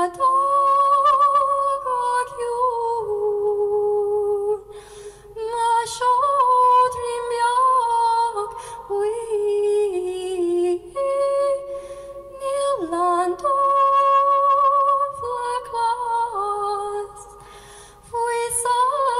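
A woman singing an Irish-language lullaby solo and unaccompanied, in slow phrases of long held, ornamented notes with short pauses between them and one downward slide near the middle.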